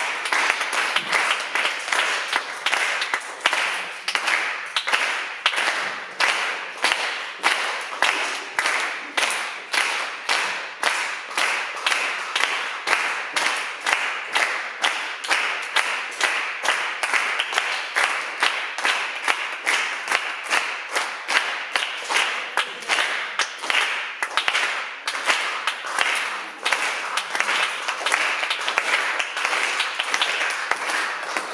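Concert-hall audience applauding continuously, the clapping falling into a regular pulse of roughly two to three beats a second.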